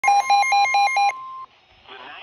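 NOAA weather alert radio sounding a warning alarm: rapid loud beeps, about four or five a second, over the steady 1050 Hz warning alarm tone. The beeping stops about a second in, and the steady tone cuts off a moment later.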